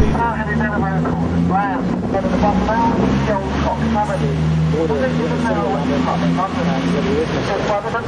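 Open-top double-decker tour bus engine running with a steady low drone, under indistinct talking.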